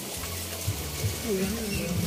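Outdoor swimming-pool ambience: a low steady hiss of water and open air, with a faint voice in the second half.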